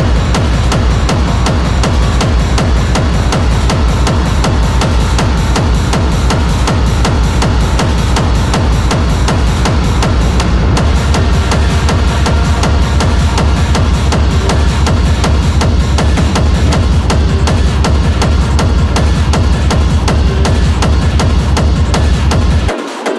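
Hard techno playing loud: a fast, steady kick-drum beat over heavy bass and dense layered synth sounds.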